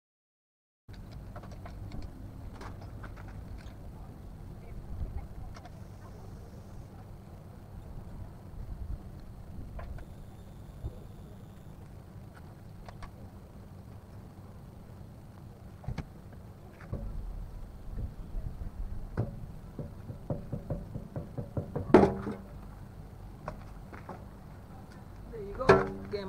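Light clicks and knocks of a car's loosened wheel bolts and rear wheel being handled by hand, over a steady low outdoor rumble. There is a sharp knock late on and a cluster of louder knocks near the end as the wheel is pulled off the hub.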